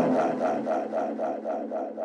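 Drum and bass outro: the drums and bass cut out and a pulsing synthesizer pattern repeats alone, about seven pulses a second, slowly fading.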